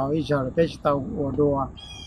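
A man speaking in Hmong, with tonal, rising and falling pitch.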